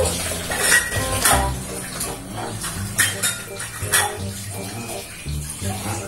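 Tap water running into a kitchen sink while dishes and cutlery are washed, with several sharp clinks and knocks of crockery and utensils.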